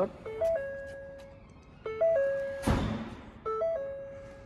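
Car warning chime repeating a short pattern of steady stepped tones about every second and a half, with a thump about two and a half seconds in.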